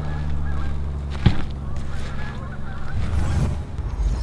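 Geese honking faintly in the distance over a steady low rumble, with a single sharp click a little over a second in.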